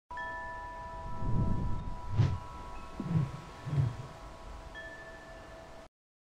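Chime tones ringing, held steadily, with a few soft low swells between about one and four seconds in; the sound stops just before the end.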